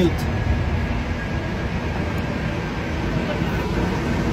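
Commuter rail train at a station platform: a steady low rumble and hiss, with a faint steady whine.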